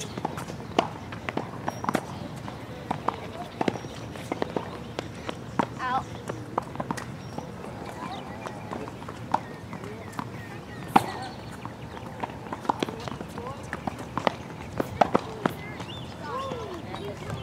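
Tennis rally on a hard court: irregular sharp pops of racquets striking the ball and the ball bouncing, with the players' footsteps. The loudest hit comes about 11 seconds in, and voices talk faintly in the background.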